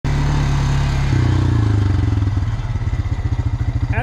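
ATV engine running while being ridden. Its note steps up about a second in, then slows to an even, pulsing beat through the second half.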